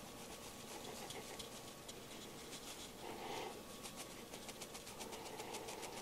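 Faint, rapid ticking and rattling from a sheet of 1/8-inch wire hardware cloth being shaken with wet, alcohol-washed bees on it, to knock varroa mites out onto a towel. The ticks grow quicker and denser in the second half.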